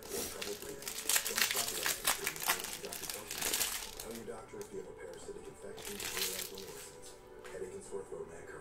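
Foil wrapper of a Panini Contenders Optic football card pack crinkling as it is crumpled in the hands. The crinkling is busiest in the first four seconds, then comes back briefly about six seconds in.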